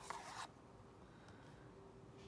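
A cardboard DVD sleeve holding a disc being slid out of a box set: a brief papery scrape in the first half second, then near silence.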